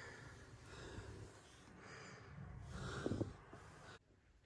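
Faint breathing close to the microphone, with a brief, slightly louder sound about three seconds in.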